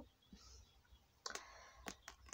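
Near silence: room tone with a few faint clicks about a second in.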